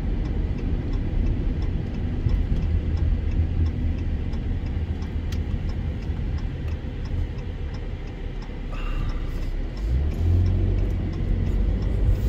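Car interior road noise: the engine and tyres rumble steadily while driving, easing off about eight seconds in and building again about ten seconds in as the car picks up speed.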